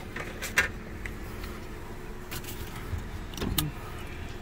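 Car engine idling, heard from inside the cabin as a steady low rumble, with a few faint clicks.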